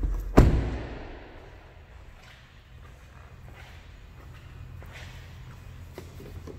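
A car door shut with a solid thud about half a second in, then a few soft footsteps over a low steady hum.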